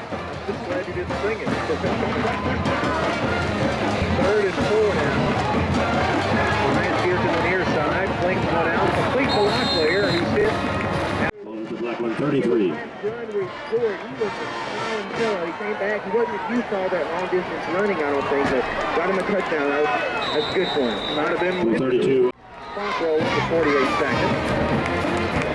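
Football crowd in the stands: many voices overlapping into a steady babble, with a short whistle blast about 10 s in and another about 20 s in. The sound breaks off sharply about 11 s in and again briefly near 22 s.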